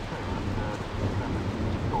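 Thunder rumbling and growing steadily louder over a hiss of rain.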